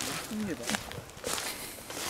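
A few footsteps on leaf-strewn ground and undergrowth, with a quiet voice murmuring briefly in the first second.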